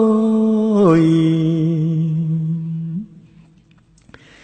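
A Cambodian Buddhist monk's solo voice chanting a mournful Khmer lament through a microphone. He holds one long note that steps down in pitch about a second in, holds it steady, and breaks off about three seconds in.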